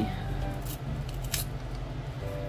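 Small plastic bag of loose nail glitter being pulled open by hand. The plastic crinkles, with two sharp crackles a little over half a second apart.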